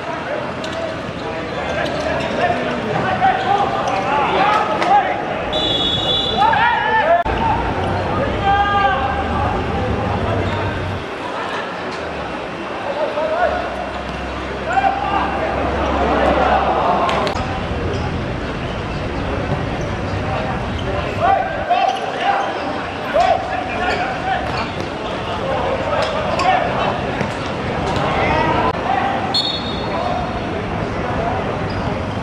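Amateur footballers shouting and calling to each other, with the ball being kicked and bouncing on a hard court. Two short, high referee's whistle blasts sound, one about six seconds in and one near the end.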